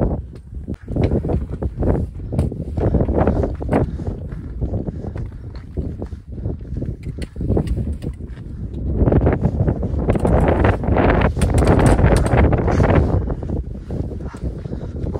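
Wind buffeting the microphone on an exposed mountain ridge, mixed with the scrape and crunch of footsteps and hand contact on loose limestone scree. The buffeting is strongest about nine to thirteen seconds in.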